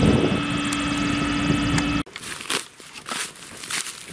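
A CLAAS Jaguar forage harvester runs under load with a steady drone and a fixed hum. It cuts off abruptly about two seconds in, giving way to footsteps crunching through loose dry straw.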